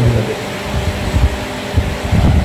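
Steady background noise with an uneven low rumble, like a fan or air conditioner running close to the microphone.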